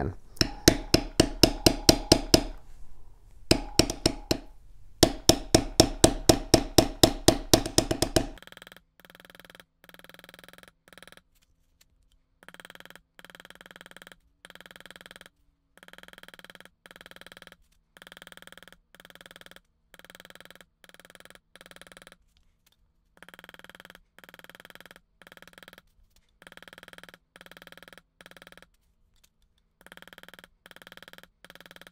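A mallet tapping a wide steel beveler along the border of a tooled leather panel, about six quick taps a second, in three runs with short pauses, over roughly the first eight seconds. After that a faint pulsing sound takes over.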